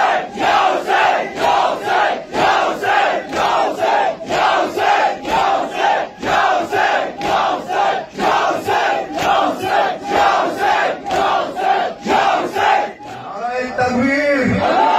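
A large crowd of male mourners chanting in unison to a steady beat of matam, hands striking chests about twice a second. The chanting and beating stop about a second before the end, and a man's voice starts on the microphone.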